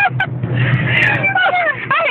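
A BMW's engine and road noise heard from inside the cabin while driving, a steady low hum that is loudest in the first half. Voices talk over it from about a second in.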